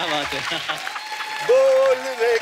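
Studio audience applauding amid overlapping voices. About one and a half seconds in, a loud, steady held musical note comes in.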